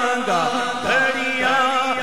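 Male voice reciting a naat unaccompanied into a microphone, in a melodic chant whose pitch wavers and slides in ornamented turns.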